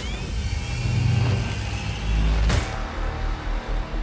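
Horror-trailer score and sound design: a low rumbling build, then a deep boom with a sharp hit about two and a half seconds in, followed by a pulsing low beat.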